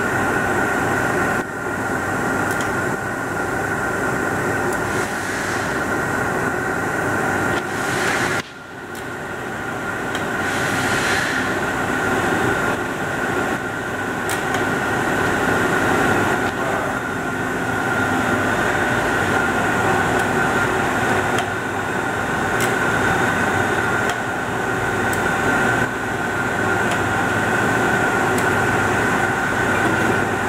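Steady industrial machinery hum in a factory bay, carrying a persistent high whine. The level drops sharply for a moment about eight seconds in, then builds back up.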